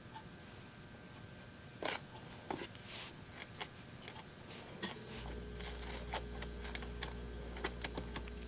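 Faint scattered clicks and rustles of fingers and a slim dibber working potting soil around seedlings in plastic cell pots. A low steady hum starts about five seconds in.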